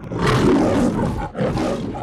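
The MGM logo's lion roaring: a long, loud roar, then a brief dip a little past a second in, and a second, shorter roar.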